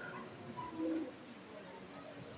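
A faint, short, low bird call about a second in, during a quiet pause.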